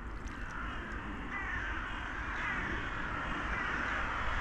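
A distant flock of waterbirds calling together, a dense chorus of many overlapping calls that grows a little louder, over a steady low rumble.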